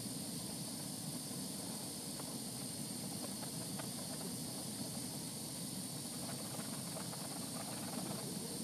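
Steady hiss of a glassworking bench torch's flame while a glass rod is heated in it, with a few faint ticks.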